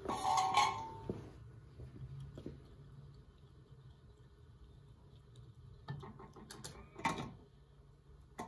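Steel electrical boxes clinking and clattering against each other as a robot gripper reaches in among them in a cardboard box. There is a louder metallic clatter right at the start and a quick cluster of clicks and clinks near the end.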